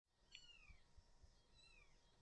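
Faint meowing of house cats: two short calls about a second apart, each falling in pitch.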